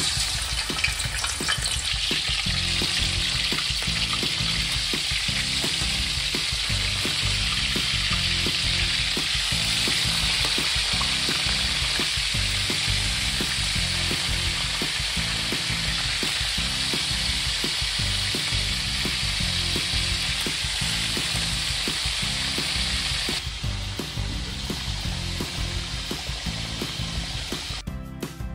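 Pieces of meat sizzling as they fry in hot oil in a wok, a dense steady hiss that drops away near the end. Background music with a steady beat plays throughout.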